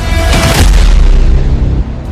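A loud explosion boom about half a second in, followed by a long low rumble, over background music.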